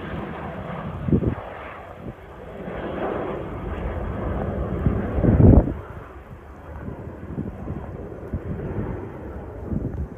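Wind buffeting the microphone in gusts, the strongest about five and a half seconds in, over the rumble of a twin-engine turboprop airliner climbing away after takeoff.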